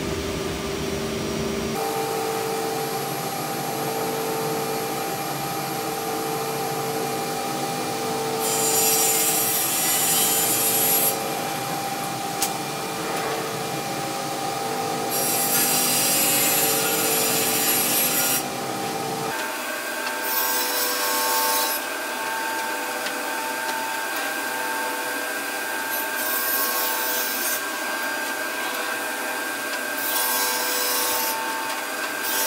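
Sliding table saw running with a steady motor tone, its blade cutting through a thin 5 mm MDF sheet; about four cuts each add a loud rushing noise for a few seconds.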